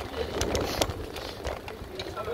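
Wind buffeting a handheld phone's microphone while cycling, heard as a low, uneven rumble, with a few sharp knocks about half a second apart.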